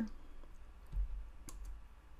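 A faint low thump about a second in, then a single sharp click half a second later, over a low steady hum.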